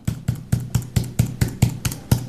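Computer keyboard keys tapped in a quick run of about a dozen keystrokes, roughly six a second: a phone number being typed in.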